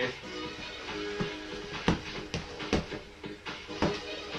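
Background music playing throughout, cut through by about five sharp smacks of boxing-glove punches landing during sparring, the loudest about halfway through.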